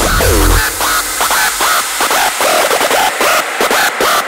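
Rawstyle hardstyle electronic dance track: the heavy bass cuts out about half a second in, leaving short, stuttering synth sounds that bend up and down in pitch, with no kick drum underneath.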